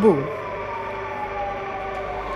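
A siren sounding and slowly falling in pitch, with a second steady tone beneath it.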